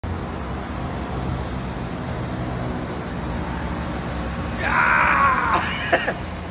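Steady background rumble and hiss. About four and a half seconds in, a man gives a loud, drawn-out shout lasting about a second, falling slightly in pitch.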